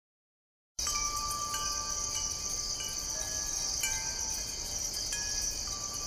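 Song intro: scattered ringing chime notes at different pitches, each held a second or more, over a steady high hiss. It begins about a second in.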